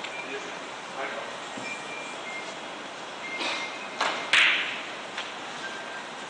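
Carom billiard shot: a sharp click of cue on ball about four seconds in, then a louder crack of balls colliding a moment later, and a fainter click about a second after that.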